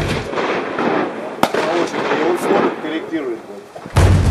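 A single sharp gunshot from a firearm on a shooting range, about a second and a half in.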